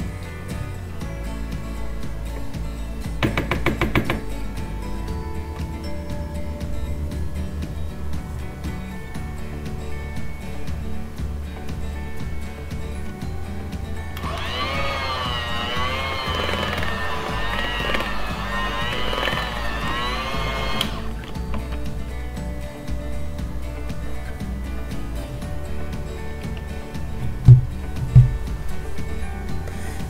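An electric hand mixer runs for about seven seconds in the middle, beating cream cheese and eggs into cheesecake batter, its whine wavering in pitch as the beaters work through the thick mix. Background music plays throughout, with a short burst of rapid clicking early on and two low thumps near the end.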